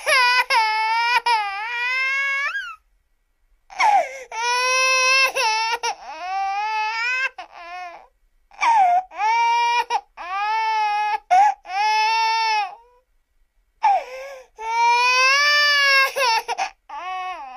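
Baby crying: high-pitched wails that come in long bouts with short pauses between them, broken now and then by quicker, choppier sobs.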